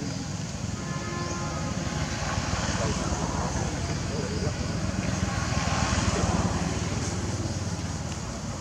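Indistinct voices of people in the background over a steady low rumbling noise.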